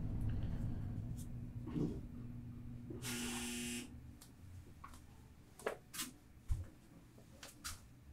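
Quiet handling sounds: a short buzz lasting under a second about three seconds in, then a few light clicks and taps, over a faint steady hum.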